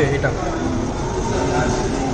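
A man says one word, then a steady low rumble of hall ambience continues with faint voices in the background.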